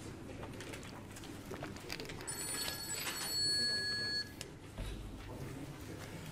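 An electronic ringing tone of several steady high pitches sounding together, lasting about two seconds from about two seconds in, over faint room noise.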